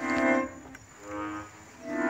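Piano accordion playing short sustained chords: one at the start, a softer one about a second in, and another beginning near the end.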